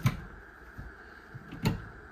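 Pair of cabinet doors under an entertainment center being pulled open: a sharp click right at the start and another knock about a second and a half later as the door catches let go.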